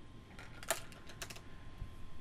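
A quick run of faint, sharp clicks and light knocks, about half a dozen, from camera lenses and their metal and plastic barrels and caps being handled and set against one another while a lens is searched for.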